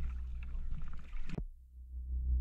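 Dive boat's low engine rumble with water at the sea surface, ending in a short sharp sound a little past halfway and then fading to near silence.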